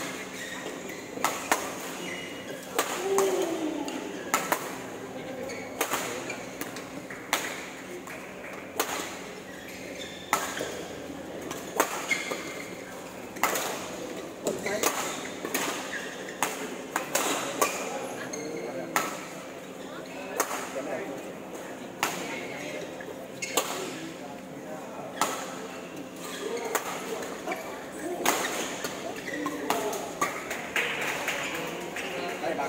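Badminton rackets striking a shuttlecock in a continuous rally, a sharp hit about every second, echoing in a large sports hall.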